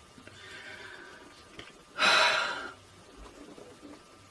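A woman's faint intake of breath, then about two seconds in one loud, breathy exhale lasting under a second: a nervous sigh or blow of air as she braces herself.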